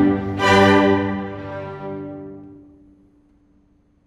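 String orchestra of violins, cellos and double bass sounding a chord about half a second in, which dies away over the next two and a half seconds into silence, one low note lingering last.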